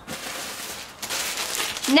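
Plastic packaging rustling and crinkling as a wrapped clothing item is handled, louder in the second half.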